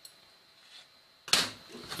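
Quiet room tone, then about a second and a half in a single short, sharp noise that dies away quickly: a handling knock or scrape from hands working a thread-tied cotton-gauze plug at the table.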